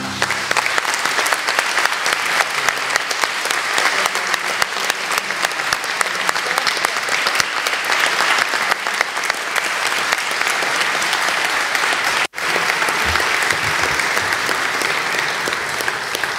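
Large audience applauding steadily, a dense patter of many hands clapping, which cuts out for an instant about twelve seconds in.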